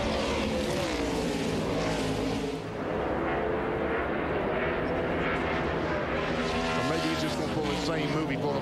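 Several NASCAR Cup stock cars' V8 engines at racing speed, their pitch rising and falling as the cars accelerate out of corners and lift for braking.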